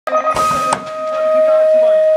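BMX electronic start-gate tone held steady for about two and a half seconds. A loud metallic clatter a third of a second in is the start gate slamming down as the riders drop onto the ramp.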